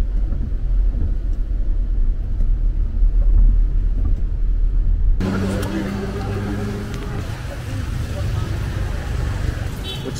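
Deep, steady road rumble inside a moving car's cabin. About five seconds in it cuts abruptly to street noise with a steady engine hum.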